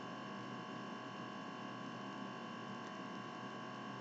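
Steady electrical hum and hiss with several constant tones, the strongest a mid-pitched one: background noise of the recording setup, with no other sound.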